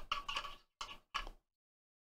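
A few short clicks and scrapes as hands turn a plastic project box and tighten a cold shoe adapter into its base. They come in a quick cluster in the first second or so.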